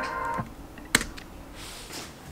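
Typing on a laptop keyboard: a few scattered key clicks, one sharp click about a second in. Background music fades out in the first half second.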